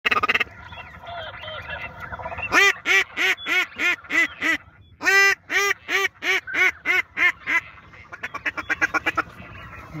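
Duck call blown by a hunter: a run of loud quacks about three a second, a short break about five seconds in, a second run, then a fast, quieter chatter near the end.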